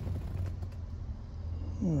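Low steady hum inside a car's cabin.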